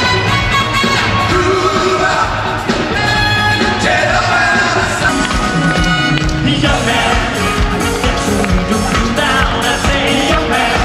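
Pop music played live by a band, with singing over it.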